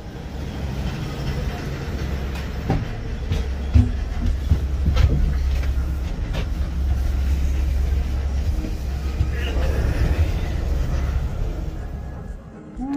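Gondola cable car cabin running through the station machinery with a steady low rumble and several sharp clacks in the first half, as it passes over the rollers and out onto the line.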